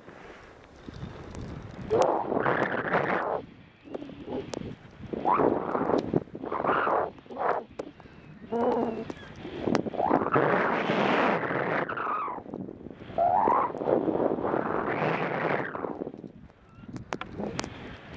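Skiing or snowboarding down through deep powder snow: a run of swooshing rushes of snow, one with each turn, some short and some drawn out over two or three seconds, with a few sharp clicks among them.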